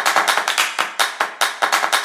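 Rapid hand clapping, about seven sharp claps a second at an uneven pace.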